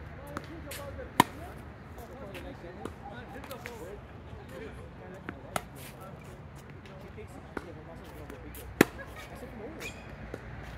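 Tennis balls struck by rackets: two loud, sharp hits, about a second in and near the end, with fainter hits and bounces in between. Faint voices are heard throughout.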